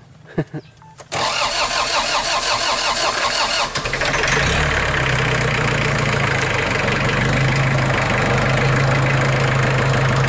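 ISEKI 5470 tractor's diesel engine being started: the starter cranks it from about a second in, and it catches a little under four seconds in and settles into a steady idle.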